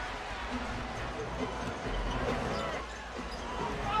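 Basketball game sound in an arena: a basketball being dribbled on the hardwood court under a steady crowd murmur with faint voices.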